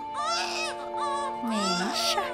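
An infant crying in a series of short, rising-and-falling wails, about three in quick succession: a hungry baby waiting for its bottle. Soft background music holds steady tones underneath.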